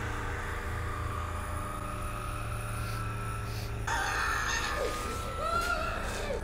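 Horror film soundtrack: a low, steady droning score, joined about four seconds in by a woman's muffled, gagged screams.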